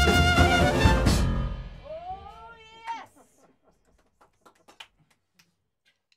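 A small hot-jazz band of trumpet, clarinet, piano and drums playing the final bars of a tune and stopping about a second in, the sound ringing away. Then a brief pitched cry that rises and falls, and a few faint clicks.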